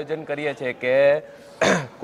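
A man talking, then a short throat clearing near the end.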